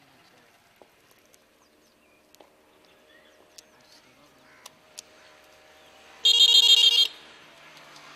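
A short, loud, rapidly pulsing ring, like a trilled bell, about six seconds in and lasting under a second, over a quiet background with a few faint clicks.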